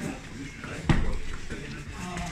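A single sharp strike landing on a handheld strike pad about a second in, over low background voices.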